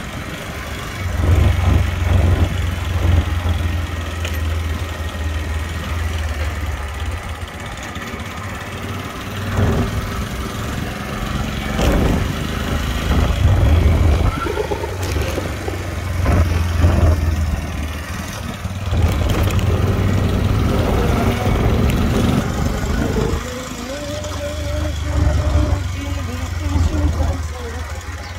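Riding on a motorcycle: a heavy wind rumble on the microphone that comes and goes, over a small engine running, with voices talking now and then.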